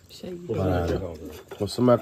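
Speech: a low-pitched voice drawing out a sound for about a second, then a shorter utterance near the end.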